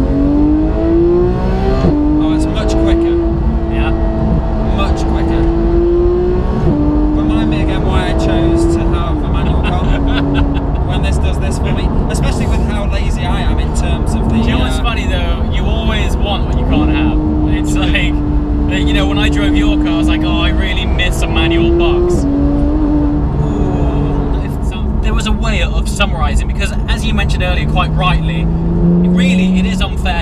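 Porsche 991 GT3's naturally aspirated flat-six engine heard from inside the cabin, rising in pitch as the car accelerates, then running at a steady moderate note that steps up and down a few times at gear changes. Voices talk over it.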